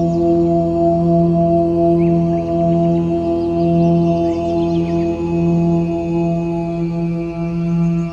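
Meditation music of a sustained low 'Om' mantra chant over a ringing singing-bowl-like drone, the low voice swelling and easing about once a second. Faint brief high chirps sound above it.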